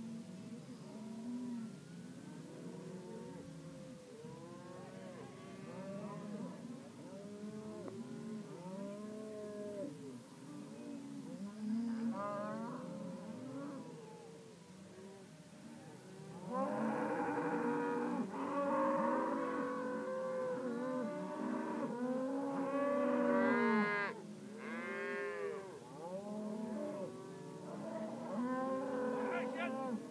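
A herd of cattle mooing continuously as it is driven across a road, many animals calling over one another. The calls grow louder and denser a little past halfway.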